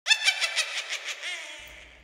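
A high-pitched cackling laugh, a quick run of about six pulses a second that starts loud and fades away over about a second and a half: a Halloween witch's cackle.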